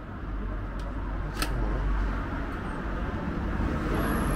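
Steady rumble of street traffic, growing slightly louder, with a single sharp click about a second and a half in.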